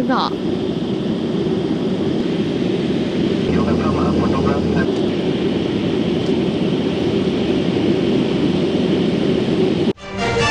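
Steady drone of aircraft engine and cabin noise, heard from on board the aircraft filming. A faint voice comes through briefly about four seconds in.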